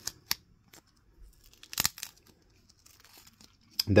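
Tape being peeled off the cap of a small ink sample vial: a few short crackles, then one louder rip a little before two seconds in, followed by faint rustling.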